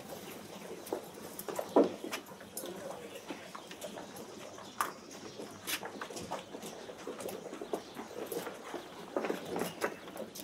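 Footsteps on a paved street: irregular taps and scuffs over a low steady background, with one louder, sharper sound just under two seconds in.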